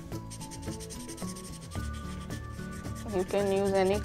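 Felt-tip marker scratching back and forth on corrugated cardboard while a patch is coloured in, over soft background music of held notes.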